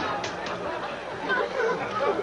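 Indistinct voices and chatter, with a few short clicks or rustles in the first half-second.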